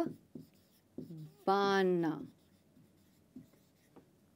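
Whiteboard marker writing, with faint short strokes of the tip on the board. A woman's voice holds one drawn-out syllable about one and a half seconds in.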